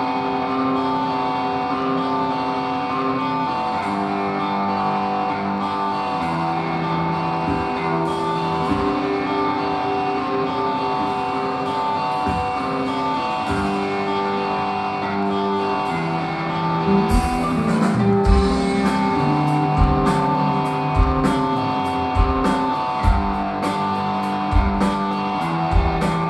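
Live rock band playing an instrumental passage: electric guitar and bass holding ringing, sustained notes, with the drum kit coming in harder with kick drum and cymbals about two-thirds of the way through.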